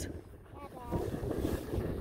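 Wind buffeting the microphone of a camera on a moving ski chairlift, a low rumbling rush that dips briefly about half a second in, with faint voices underneath.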